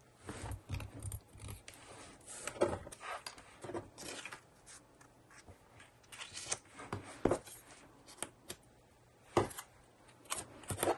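Hands handling small paper pieces and embellishments on a wooden tabletop: scattered light paper rustles, taps and clicks.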